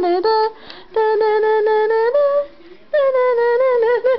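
A toddler humming long, high, steady notes in three stretches with short breaks between them.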